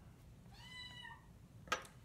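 A kitten meowing once, a single high, thin call under a second long starting about half a second in. A short click follows near the end.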